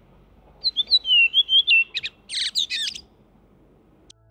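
Redwing singing: a short run of descending whistled notes, then a quick twittering chatter that stops about three seconds in. It is heard through noise reduction, so the background traffic noise is mostly removed.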